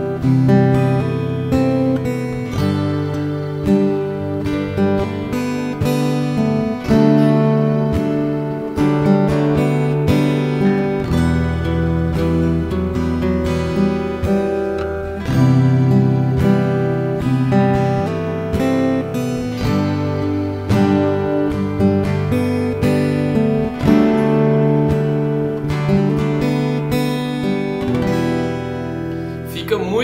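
Steel-string acoustic guitar played fingerstyle: a slow fingerpicked arrangement in G major, with the thumb on the bass strings, the fingers picking melody notes on the treble strings, and hammer-ons on the third string.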